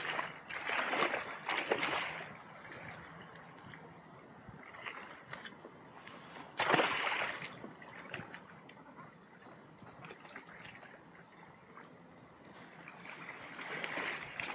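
Water lapping and sloshing at the edge of a lake, in uneven surges, the loudest coming sharply about seven seconds in.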